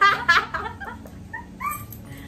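Women's high-pitched laughter in quick bursts, loudest in the first half second, with a short high squeal near the end.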